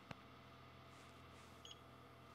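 Near silence with a faint steady hum, broken by one sharp click just after the start. About a second and a half in comes a brief, faint, high beep from the Xeltek SuperPro 6100N chip programmer as it finishes programming the chip.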